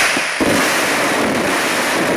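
Fireworks going off as a loud, dense, continuous crackling barrage, with a short dip just before half a second in.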